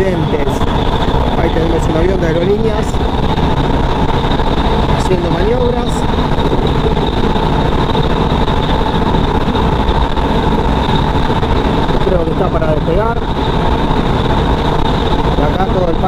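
Passenger train running along the track, heard from inside the coach: a loud, steady rumble of wheels on rail with a steady hum over it.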